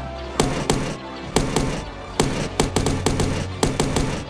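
Action-film battle soundtrack: music under a rapid, irregular run of sharp shots and impacts, about a dozen in four seconds.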